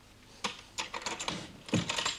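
About five light, sharp clicks at uneven intervals.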